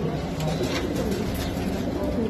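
Domestic pigeons cooing, low soft calls that rise and fall.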